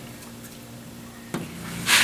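Faint rubbing and handling of soft cookie dough on a wooden table over a low steady hum, with a short, loud noisy burst near the end.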